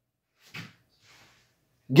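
A pause in a man's speech: a short, soft noise about half a second in and a faint hiss around a second in, then he starts talking again near the end.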